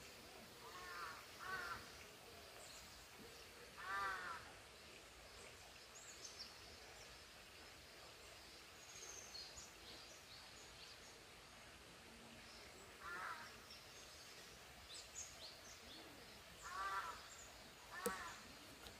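Faint outdoor birdsong: a larger bird gives five short calls, two close together near the start, the loudest at about four seconds and two more near the end. Between them, small birds chirp high and briefly over a quiet background.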